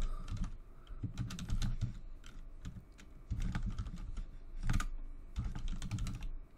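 Computer keyboard being typed on in short, irregular runs of keystrokes with brief pauses between them.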